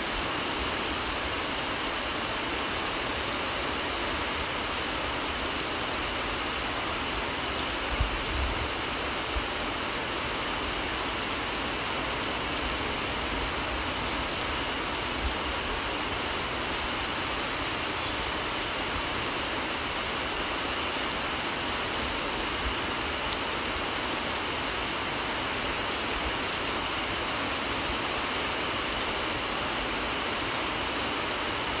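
Heavy rain pouring down, a steady, even hiss, with a few brief low thumps about eight seconds in and again later.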